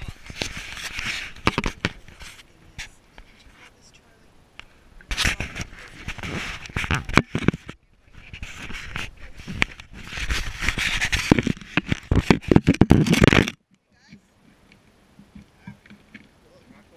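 Handling noise from a carried action camera: rustling, scraping and knocks in loud irregular bursts, cutting off abruptly about thirteen and a half seconds in.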